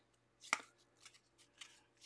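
Faint handling of a small stack of football trading cards: one sharp click about half a second in, then a couple of soft ticks as the cards are slid through the hands.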